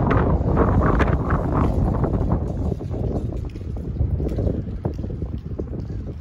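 Strong wind buffeting the camera microphone: a heavy, unpitched low rumble that eases somewhat in the second half.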